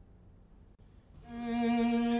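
A pause with faint tape hiss, then about a second in a solo viola enters, bowing the opening notes of a Baroque obbligato line.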